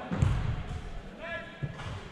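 Men shouting across a turf soccer pitch, with a dull thud about a quarter second in.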